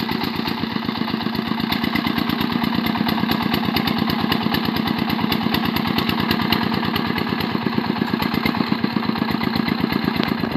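Single-cylinder diesel engine of a công nông two-wheel tractor cart chugging steadily with a rapid, even beat as it pulls a load of bananas through mud, growing slightly louder as it approaches.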